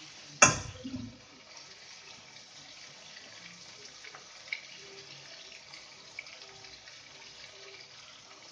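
A single clank of a metal utensil about half a second in, then chicken frying in oil in a kadai, a faint steady sizzle with a few small pops.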